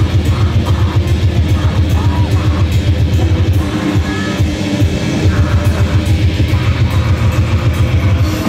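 Grindcore band playing live: loud distorted guitar and bass over fast, even drumming, thinning briefly about halfway through.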